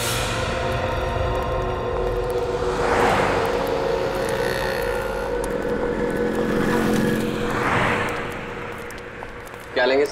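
Background score: a sustained drone of held tones over a low rumble, with two swelling whooshes, one about three seconds in and one near the end.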